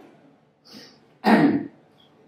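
A man clearing his throat once, loudly and close to a microphone, a little over a second in, after a faint short breath.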